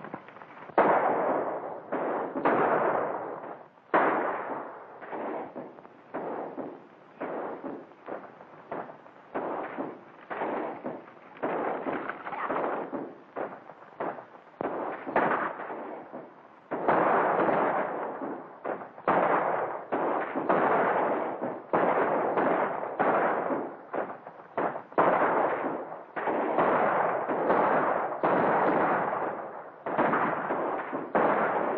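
A gunfight: many gunshots in quick succession, sometimes several a second, each with an echoing tail, running without pause through the whole stretch.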